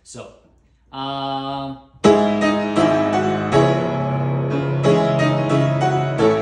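Acoustic grand piano played from about two seconds in: a slow passage of chords and melody notes, a new note or chord about every half second, each ringing on under the next. Just before the playing, a short steady held tone lasts under a second.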